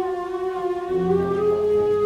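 Symphonic wind band playing a concert pasodoble: one long held note that slides slightly upward in pitch, with lower brass chords coming in about a second in.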